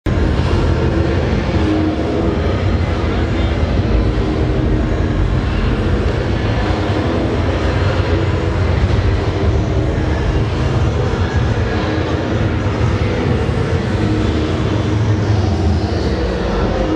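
Loud, steady ambience of a crowded indoor exhibition hall: a continuous low rumble with indistinct voices mixed in.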